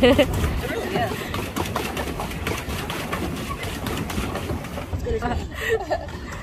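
Indistinct voices and a short laugh at the start, with more talk near the end, over a steady low rumbling noise.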